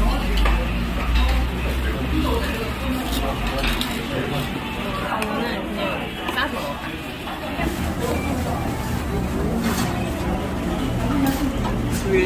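Kitchen scissors snipping through kimchi, with occasional clicks and clinks of metal against a plate, over indistinct voices and room noise.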